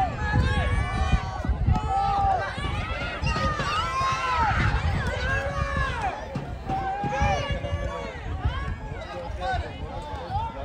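Several voices shouting and calling out over one another without a break, over a low rumbling background.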